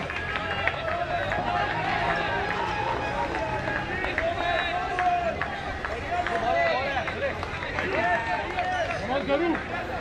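Several people's voices calling out and talking over one another, with a light murmur of more voices behind.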